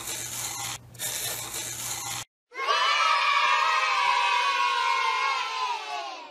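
Scratching of a pen drawing on paper for about two seconds, with a short break just under a second in. Then a crowd of children cheering for about four seconds, louder than the scratching, which fades out at the end.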